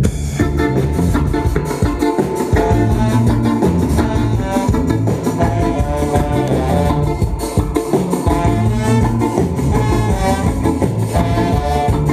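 Live band starting a song right on the beat, horns, electric guitar and drums playing together in an instrumental passage.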